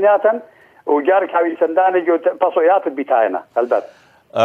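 Only speech: a man talking over a telephone line, with its narrow, thin sound and a brief pause about half a second in.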